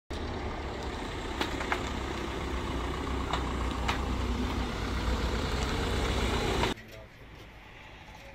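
Small gendarmerie panel van's engine running as it drives out through a gate, a steady low rumble with a few short knocks, cutting off suddenly about two-thirds of the way in.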